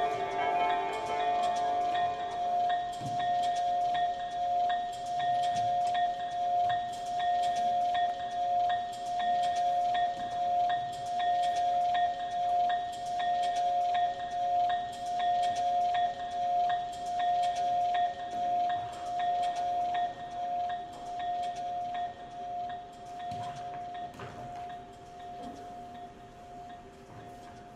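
Chime music: a held bell-like tone with light, scattered tinkling strikes over it. A fuller cluster of tones dies away in the first couple of seconds, and the whole sound fades gradually over the last several seconds.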